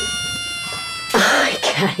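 An edited-in sound effect: a high pitched tone that slides down, then holds and slowly fades, followed about a second in by a short burst of hiss.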